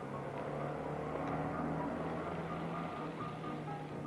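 A motor vehicle running, its noise swelling through the middle and easing towards the end, under the film's background music.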